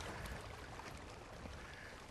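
Faint, steady water noise around a canoe on a river, growing slightly quieter over the two seconds.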